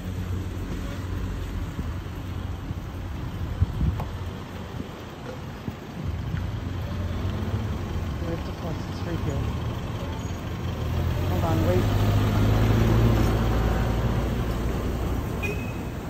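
Wind buffeting the phone microphone over road traffic going by, with two sharp knocks about four seconds in. A vehicle passes closer and louder about two-thirds of the way through.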